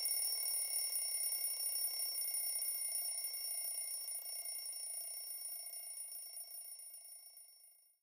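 Faint sustained high-pitched tones over a soft hiss, slowly fading out near the end.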